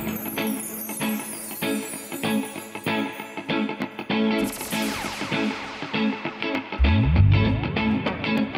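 Live band playing an instrumental passage: electric guitars over a steady drum beat. The deep low end is thin at first, then comes back in with rising slides about seven seconds in.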